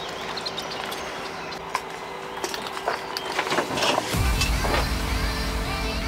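Light clicks and knocks of fly-rod tubes and gear being handled, then electronic music with a heavy bass comes in about four seconds in.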